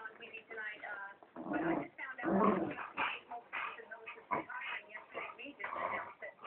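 Two dogs vocalizing while play-wrestling: whines and yips in many short bursts, loudest about two to three seconds in.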